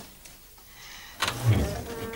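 A wooden wall panel sliding, with a faint scrape building up and a heavy thud about a second and a quarter in.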